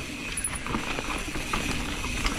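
Radon Swoop 170 full-suspension mountain bike rolling fast down a dry dirt trail: steady tyre and trail noise with small knocks and rattles from the bike.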